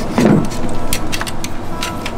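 Dishes and cutlery clinking at a dinner table as food is served and eaten, in many short sharp clicks, with a brief voice sound just after the start.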